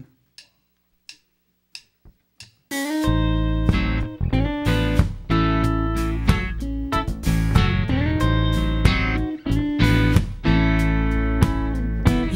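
Four short, evenly spaced clicks count off the tempo, then a blues band comes in together about three seconds in: electric guitar playing the intro over bass and acoustic guitar.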